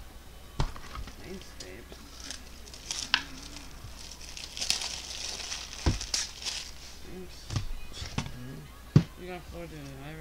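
Foil trading-card pack wrapper crinkling, mostly in the middle, with several sharp knocks and taps on the tabletop as cards and packs are handled; the loudest knock comes near the end.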